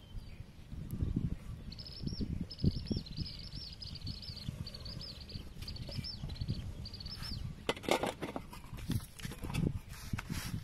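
A small bird chirping in quick repeated phrases of short high notes, over uneven low bumps from hands handling peppers on a metal steamer tray. Near the end come a brief crackly clatter and more knocks as the steamer pot is handled.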